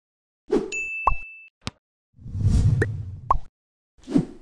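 Cartoon sound effects for an animated logo intro. A short burst comes first, then a ringing ding, a click, three quick rising plops and a low rushing swell, each set apart by brief silences.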